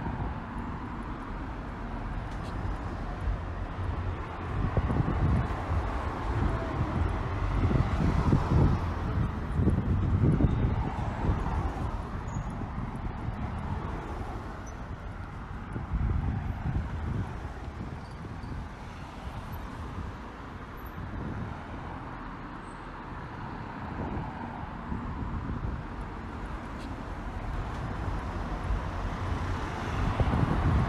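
Road traffic on a busy city street: cars going past close by, their low rumble swelling and fading as each one passes, loudest from about five to eleven seconds in.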